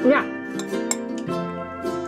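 Background music of plucked strings, with a metal fork clinking a few times against a ceramic bowl.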